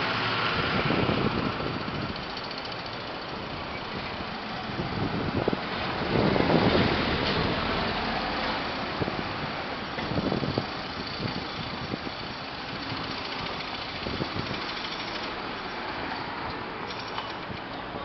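Road traffic on a town street: cars, vans and a truck driving past close by, their engines and tyres giving a steady noise that swells loudest about six to seven seconds in.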